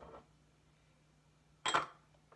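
A short clink of a small dish being handled on the counter near the end, after a quiet stretch with only a faint steady hum.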